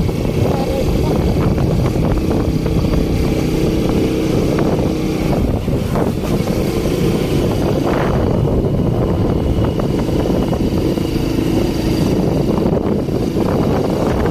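Small two-wheeler engine running steadily under way, with wind rumbling on the microphone.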